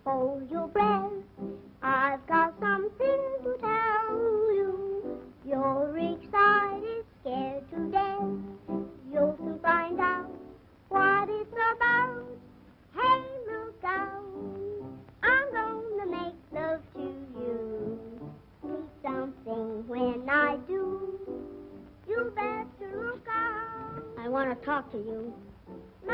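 A woman singing a song in a high voice with a wide vibrato, over instrumental accompaniment, on a narrow-band old film soundtrack.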